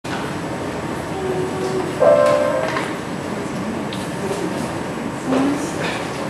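Grand piano being played, a simple children's piece in separate notes, with a loud chord struck about two seconds in and another strong low note near the end, over a steady background hiss.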